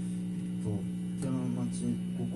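Steady electrical mains hum from the band's plugged-in guitar amplification, with faint talk in the room partway through.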